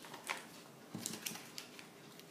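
Pages of a handmade paper journal being flipped and handled on a tabletop: a few faint paper rustles and light taps.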